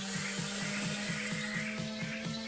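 Hiss of an e-cigarette's atomizer coil firing while it is drawn on, stopping just before the end as the draw ends. Background music with a steady beat plays underneath.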